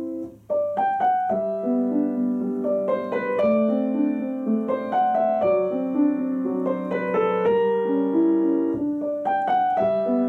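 Grand piano playing a nocturne: a held chord dies away, there is a brief gap about half a second in, then the melody resumes over a sustained low note.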